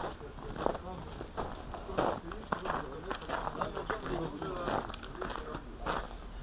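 Indistinct background voices of people talking, with no clear words, quieter than the nearby narration.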